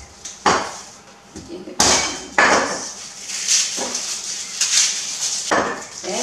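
Wooden pestle pounding whole garlic heads in a mortar: about five dull knocks at uneven intervals, with crackling of the papery garlic skins between them. The pounding loosens the cloves so that they peel off easily.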